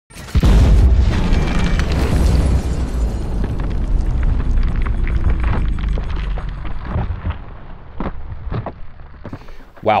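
A 12-gauge shotgun blast slowed down: a deep boom that starts suddenly, then rumbles and slowly dies away over about eight seconds, with a few crackles as it fades.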